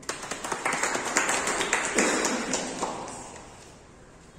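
A group of people clapping, starting suddenly and dying away after about three seconds.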